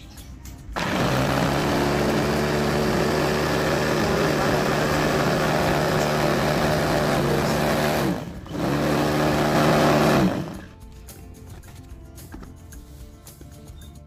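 Small KYLO electric food chopper running, its motor and blades whirring steadily as they grind shallots, garlic, chillies and other spices into a paste. It runs for about seven seconds, stops briefly, runs again for under two seconds, then stops.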